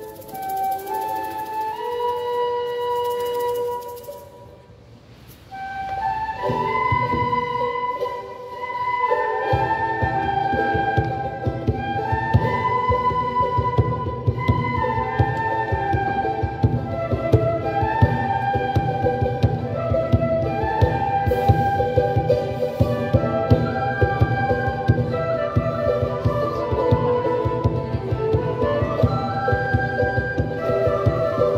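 Recorder and flute playing a melody together, with a short pause about four seconds in; from about nine seconds in a steady rhythmic low accompaniment joins under the tune.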